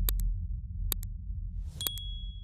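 Subscribe-animation sound effects: a deep steady rumble under three pairs of sharp mouse clicks about a second apart, then a short whoosh and a single high bell ding near the end.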